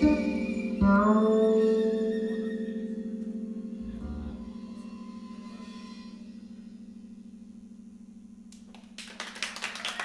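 A live band of electric bass, violin and keyboard holds the final chord of a piece: a chord struck about a second in rings over a sustained low note and slowly fades away. Audience applause starts near the end.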